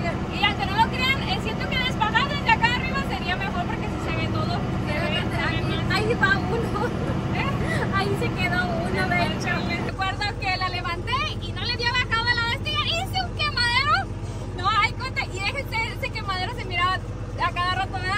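A woman talking over the steady running of a tractor engine, heard from inside the cab. The engine hum changes abruptly about ten seconds in.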